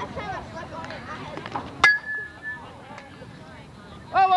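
Aluminium softball bat striking the ball: one sharp ping about two seconds in that rings briefly on a single high tone, over background voices.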